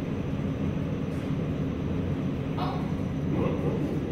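A steady low hum and rumble in the background, with a faint voice briefly about two and a half seconds in.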